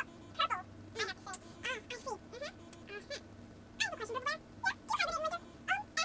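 A woman's voice babbling in high, squeaky, unintelligible syllables, short chirps that swoop up and down in pitch.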